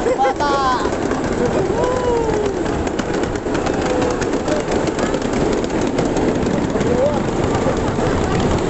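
Ride-on mini train running along its narrow-gauge track, a steady rumble and rattle of wheels on rail, with voices over it.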